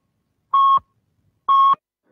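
Radio time-signal pips marking the top of the hour: two short, identical electronic beeps of one steady pitch, a second apart.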